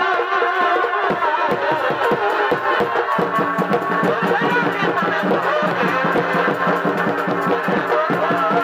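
Live Purulia Chhau dance music: a wavering reed-pipe melody, in the manner of a shehnai, over fast, dense drumming. About three seconds in the melody drops back and the low drum strokes come forward.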